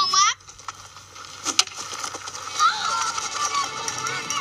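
Boys shouting during a backyard baseball game, with a single sharp crack about one and a half seconds in. This is a film soundtrack heard through a television.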